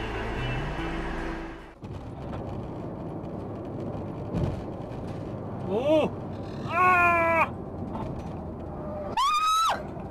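Steady road and engine noise inside a moving car on a highway, broken by an edit cut about two seconds in. A person exclaims "oh" about six seconds in, then gives a longer held cry, and a sharp rising cry comes near the end as a car ahead spins into the barrier.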